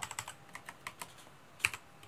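Computer keyboard keys being typed: light, irregular keystrokes, with one louder key press about a second and a half in.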